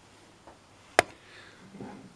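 A single sharp tap about a second in: a hard object set down on a wooden tabletop, as the metal ruler is put down and the resin model building is handled. Otherwise quiet room tone.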